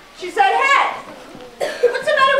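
A child's voice making two short wordless vocal sounds about a second apart, each sliding down in pitch.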